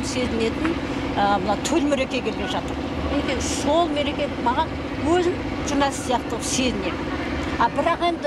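A woman talking steadily, over a steady low background hum.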